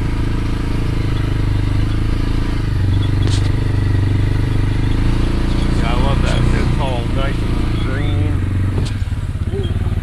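Off-road vehicle engine running steadily while under way, with a few short sharp knocks and brief voices over it.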